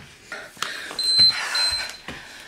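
Two short high electronic beeps about a second in, the second slightly longer, typical of an interval timer marking a change of interval. Under them, hard breathing through exertion and a few soft knocks of hands and feet on the floor.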